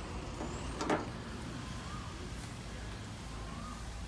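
Steady low vehicle rumble, with one short sharp clack about a second in.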